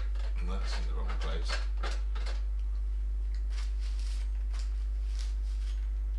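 A steady low hum with scattered light clicks and taps of paintbrushes and paint tools being handled at the palette and easel, busiest in the first two seconds and again toward the end.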